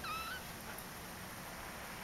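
Young Persian kitten giving one short, high mew at the very start, its pitch rising slightly at the end.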